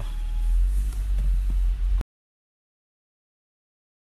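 Low rumble of a car heard from inside the cabin as it moves off, cut off abruptly about halfway through into complete silence.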